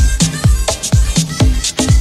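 House music from a DJ mix: a steady four-on-the-floor kick drum about twice a second, with hi-hats ticking between the beats.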